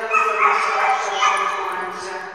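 A dog yipping and whining close by, loud, with high pitched cries that rise and fall, mixed with people's voices.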